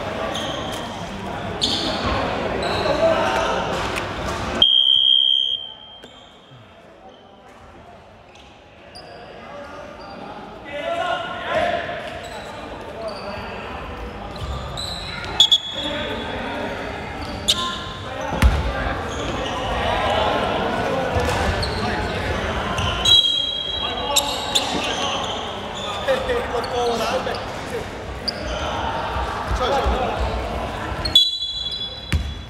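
Ambience of an indoor basketball game in a large echoing hall: players' voices and a basketball bouncing on the hardwood court. A short, shrill referee's whistle sounds about five seconds in.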